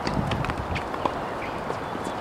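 Footsteps and a few light taps as a tennis player walks on a hard court between points, over steady outdoor background noise.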